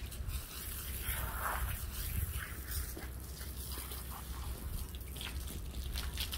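Water from a garden hose spraying onto a horse's wet coat and dripping and trickling off onto the ground, with scattered small drip ticks. A steady low rumble runs underneath.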